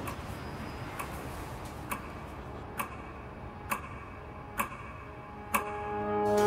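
Slow, even clock-like ticking, a little under one tick a second, the ticks growing louder toward the end over a low background hiss.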